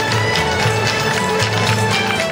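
Traditional fiddle music played by a group in a jam, with a bass line and a steady beat.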